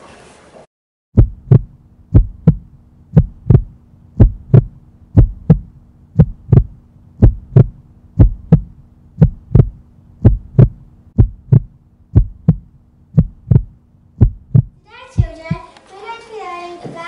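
Heartbeat sound effect: a double lub-dub thump about once a second over a steady low hum. It starts about a second in and stops shortly before the end.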